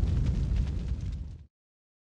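Tail of a boom sound effect in an end-logo sting: a deep rumble with faint crackles, fading and then cut off about one and a half seconds in.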